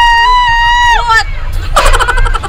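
A rider's long, high-pitched scream on a moving amusement ride, held on one pitch for about a second and a half before breaking off. A noisy burst of screaming or laughter follows near the end, with wind rumbling on the microphone throughout.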